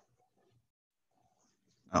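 Near silence: a pause with only faint room tone, then a voice begins speaking at the very end.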